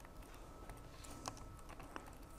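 Faint computer keyboard typing: a few separate key clicks at an uneven pace as a short word is typed.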